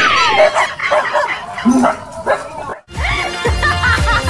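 A dog barking and yelping over background music. A little under three seconds in, the sound breaks off suddenly and music with a heavy low beat carries on.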